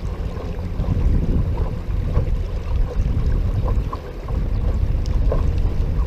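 Wind buffeting the microphone in a heavy, uneven low rumble over water rushing and splashing past a kayak driven by an electric trolling motor, with a faint steady hum underneath.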